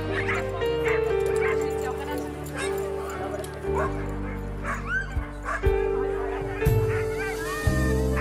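Dogs barking repeatedly over background music with long held notes; the barks are high calls that bend up and down in pitch, the loudest about six to seven seconds in.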